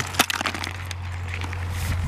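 Crayfish trap being emptied into a plastic bucket: a few sharp clicks and rattles near the start as the trap is handled and the crayfish drop in, then a low steady rustle.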